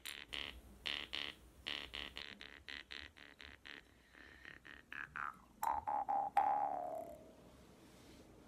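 Jaw harp being played: a quick, even rhythm of twangs whose bright overtone shifts as the mouth shape changes, sliding down in pitch about five seconds in. It ends with a few louder twangs, the last one ringing on and dying away about seven seconds in.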